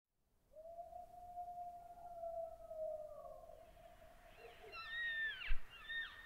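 A wild animal howling. One long call slowly falls in pitch, then several shorter, higher calls rise and fall in pitch in the last two seconds. A brief low thump comes shortly before the end.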